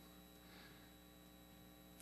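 Near silence: a faint, steady electrical hum in the room tone.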